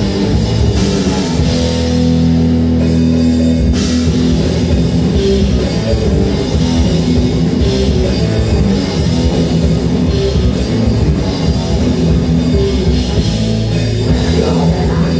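Live rock band playing an instrumental passage with electric guitars, bass guitar and drum kit. About three seconds in, the drums stop for roughly a second while a low chord rings, then the full band comes back in.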